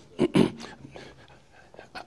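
A man clearing his throat, two quick sounds close together near the start.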